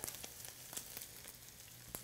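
Ground beef sizzling faintly as it browns in a hot pan with oil over medium-high heat, with a steady hiss and many fine crackles.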